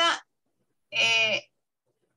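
A person's voice: one drawn-out vowel, steady in pitch, about half a second long, about a second in.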